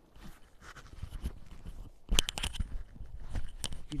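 Dry crunching and crackling in dry grass and gravel, in short irregular bursts, loudest in a cluster about two seconds in.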